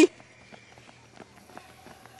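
Children's running footsteps on asphalt, heard as faint irregular footfalls.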